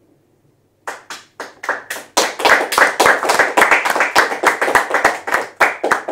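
A small group applauding: a few single claps about a second in, then steady, dense clapping from about two seconds in.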